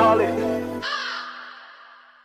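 A rap track ending: rapped vocal over the beat, then the beat cuts out suddenly under a second in. A final echoing sound rings out and fades away to silence.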